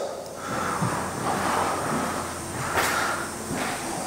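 Footsteps on a bare concrete subfloor with rustling handling noise from a handheld camera as it is carried through empty rooms, a few soft knocks standing out.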